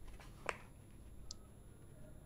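Quiet room tone with a single sharp click about half a second in, followed by a faint, brief high blip.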